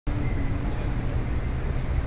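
Steady low rumble of vehicles and road noise.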